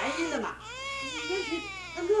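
Infant crying in drawn-out, wavering wails, the longest starting about half a second in, with a woman's voice speaking over it.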